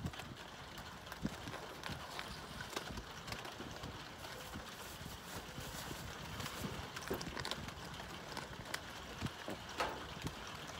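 Light rain falling on the wooden roof overhead: a soft steady hiss with many scattered, irregular taps of drops.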